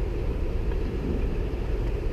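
Steady low rumble of outdoor traffic noise from vehicles around a gas station forecourt, with no distinct events.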